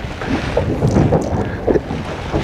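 Wind buffeting the microphone out on open water, over the low, uneven rumble of the boat and the sea.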